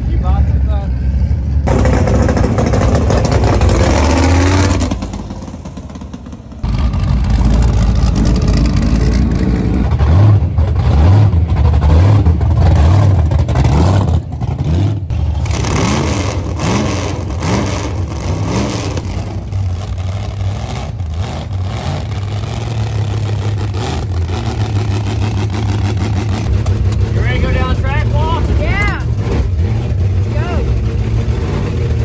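Hot-rodded V8 drag-car engines idling and being revved in short cut-together clips, with people talking over them.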